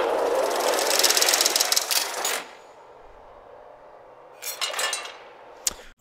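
Mechanical rattling and whooshing sound effect of the NFL Top 100 rank-reveal graphic, with its number drums rolling to the ranking. A dense rapid rattle lasts about two and a half seconds, then drops away, with a few ticks and a sharp click near the end.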